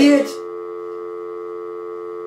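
Telephone dial tone: a steady, unbroken low hum of mixed tones. A voice trails off just as it starts, leaving the tone alone.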